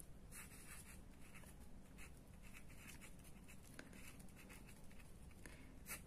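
Faint scratching of a pen writing on paper, in a series of short strokes.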